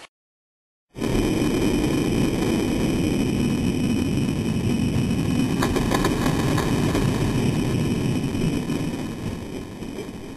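Several die-cast Hot Wheels cars rolling down a six-lane plastic raceway: a steady rumble of wheels on the track that starts about a second in and fades near the end as the cars reach the finish.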